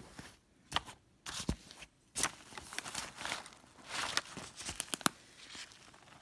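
Fabric bag and the items in its compartment being handled: irregular rustling and crinkling with scattered sharp clicks, broken by short quiet gaps.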